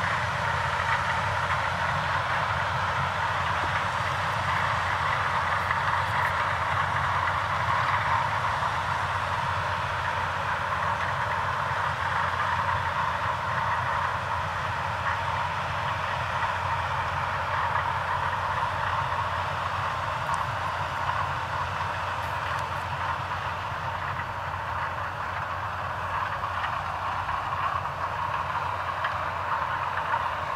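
New Holland CX combine harvester with a Geringhoff corn header running under load while harvesting grain maize: a steady drone of engine and threshing machinery that holds an even level.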